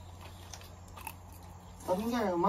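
People eating noodles from bowls: faint chewing and a few soft clicks of utensils. A woman's voice starts just at the end.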